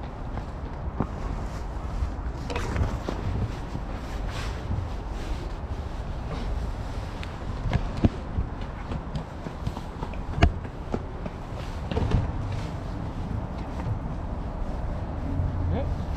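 Fabric and a backpack rustling and rubbing against the microphone as the camera is handled, over a low rumble. There are scattered sharp knocks, the loudest about eight seconds in and again about ten and a half seconds in.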